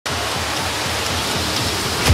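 A steady, even hiss like heavy rain, laid in as a sound effect under the opening, with a low rumble beneath it.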